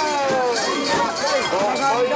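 Many mikoshi bearers calling out together, their voices overlapping in rising and falling cries as they carry the portable shrine, with metallic clinking from the shrine's metal fittings.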